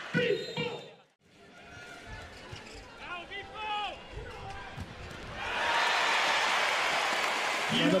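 Volleyball rally on an indoor court: ball contacts and short sneaker squeaks on the floor. A large arena crowd then breaks into loud, sustained cheering about five and a half seconds in, as the point is won.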